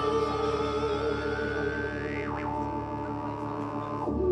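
Live electronic music: a drone of held modular-synthesizer tones under a male voice singing long notes into a microphone. About two seconds in, one tone glides slowly upward, then swoops quickly back down.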